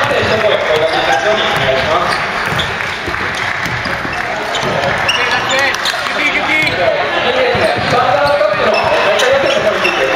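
A basketball bouncing on a wooden gym floor as it is dribbled during play, among the overlapping voices of players and onlookers echoing in a large hall.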